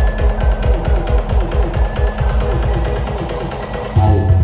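Electronic dance music with a fast, heavy, repeating bass beat, played loud over a carnival sound system.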